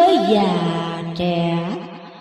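Vietnamese chanted verse recitation (ngâm): one voice holding long drawn-out notes. It drops in pitch just after the start, moves onto a new held note about a second in, and fades toward the end.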